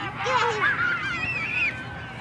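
Several people shouting and calling out at once at a youth football game, with one long, high-pitched held yell in the second half.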